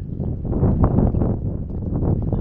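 Wind buffeting the microphone: a loud, irregular rumble that swells about halfway through.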